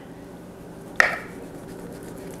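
A kitchen knife clicks once against a plastic plate about a second in, as it cuts through a slab of thick-cut bacon. Otherwise quiet room tone.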